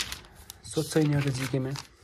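Paper pages of a thick printed book being flipped: a rustle right at the start and a short flick about half a second in, with speech over the rest.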